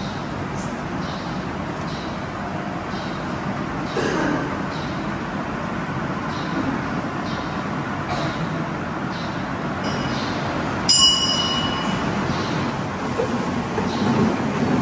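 Steady room noise of a large dining hall, a low hum and hiss with faint soft clatter. About eleven seconds in comes a single bright metallic ring that fades over about a second, like a small bell or a metal dish being struck.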